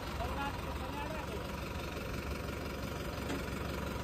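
Diesel tractor engine idling steadily with a low, even rumble.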